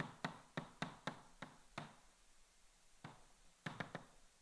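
Chalk writing on a chalkboard: a quick run of sharp taps and short scratches as letters are written, a pause of about a second, then a few more taps near the end.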